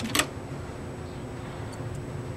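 Reel-to-reel tape deck rewinding: a key click just after the start, then a steady whir of the fast-spinning reels.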